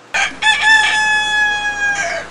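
A rooster's cock-a-doodle-doo crow coming through a CB radio's speaker, a station's recorded crow sent over the air: a few short broken notes, then one long held note that stops near the end.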